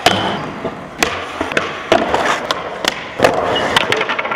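Skateboard wheels rolling on smooth concrete, with a run of sharp clacks and slaps as boards pop, hit obstacles and land, about eight impacts in four seconds.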